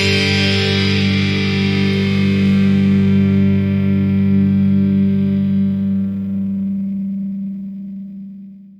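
The closing distorted electric-guitar chord of a melodic black metal track, held and left ringing with no drums. It slowly fades away, dying out just after the end.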